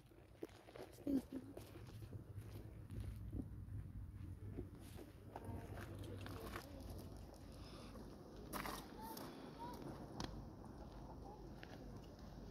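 Faint small crunches and clicks of a deer eating at the ground, with soft footsteps on gravel and a low rumble underneath.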